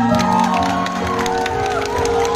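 Live band playing on after the singer's long held note ends at the start, with scattered audience clapping and cheering over the music.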